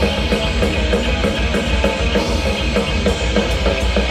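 A thrash metal band playing live: distorted electric guitar riffing over a loud, driving drum-kit beat, with no vocals in this stretch.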